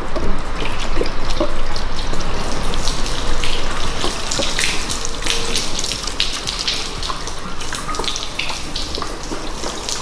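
Water pouring from a plastic jug onto a car's painted hood, splashing and running off the paint in sheets, with an uneven stream of small splashes.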